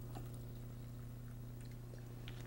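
Lacquer thinner poured from a plastic bottle into a small paper cup: a faint trickle of liquid with a few small clicks of the bottle, over a steady low electrical hum.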